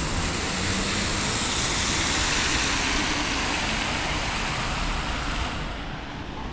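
Road traffic noise on a wet street: a steady hiss of tyres on wet tarmac that swells through the middle and drops away shortly before the end.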